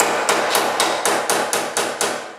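Quick, even metal-on-metal hammer taps, about six a second, on a stuck iron piece in a vintage motorcycle's engine.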